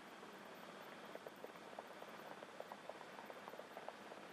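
Very faint, steady hiss with scattered soft, irregular ticks and crackles through it.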